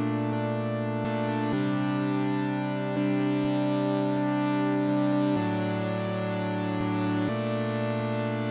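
Korg Minilogue XT synthesizer playing sustained chords that change every couple of seconds, while its filter is turned up so the sound grows brighter from about a second in.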